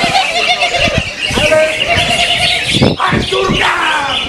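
A dense chorus of caged songbirds, greater green leafbirds among them, chirping and warbling together, with people's voices shouting over them.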